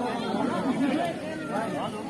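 Only speech: people talking, overlapping chatter of voices.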